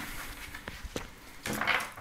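Deck of Lenormand oracle cards being gathered and squared in the hands on a table: a few light clicks of card edges, with a soft rustle near the end.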